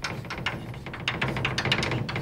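Chalk writing on a blackboard: a quick, uneven run of taps and scratches as the chalk strikes and drags across the board.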